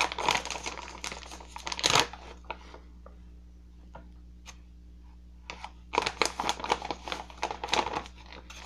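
Clear plastic tobacco bag crinkling as it is handled and pulled open. The rustling comes in two spells, with a quieter gap of about three seconds in the middle.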